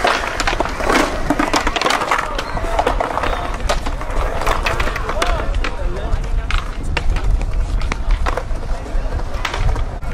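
Skateboard wheels rolling on smooth concrete with a steady low rumble, broken by a series of sharp clacks from the board hitting the ground and ledges.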